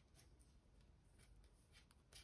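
Near silence, with a few faint clicks and rustles of wooden knitting needles working wool yarn.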